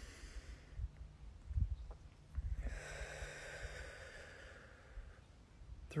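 A man's slow, deliberate breath, heard as one long airy rush of about two and a half seconds starting about halfway through, paced as part of a counted breathing exercise. Low thumps on the microphone come before it.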